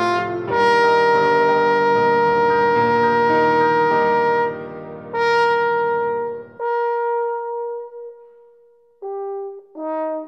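French horn and piano playing a slow, lyrical Romantic classical piece, with long sustained horn notes over piano accompaniment. About two-thirds through, the accompaniment stops and a single long note is held alone, fading almost to nothing. A new phrase starts near the end.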